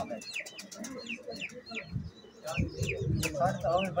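Outdoor birdsong: many small birds chirping in quick, falling notes, several a second, with pigeons cooing low underneath.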